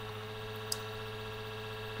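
Computer fan humming steadily, with one short faint click a little after a third of the way through.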